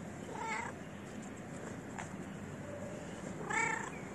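A tabby stray cat meowing twice for attention: two short meows about three seconds apart, the second one louder.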